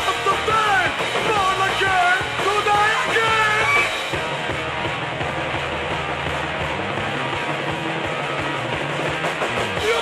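A late-1970s punk rock band playing full on. For about the first four seconds a sliding, wavering melodic line rides over it, then only the dense band sound carries on.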